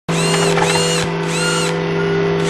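Synthesized mechanical whirring sound effects over a steady low hum, with three whirs that each rise, hold and fall away.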